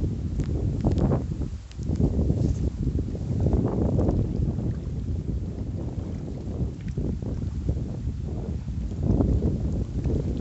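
Wind buffeting the phone's microphone: a heavy low rumble that rises and falls in gusts.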